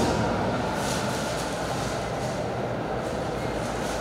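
Steady background rumble and hiss with a faint low hum.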